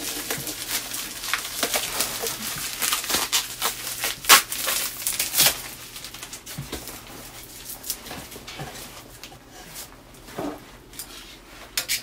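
Plastic packaging wrap crinkling and rustling as it is pulled off an item, dense for the first half with a sharp crackle about four seconds in. It then thins to scattered clicks and handling noises.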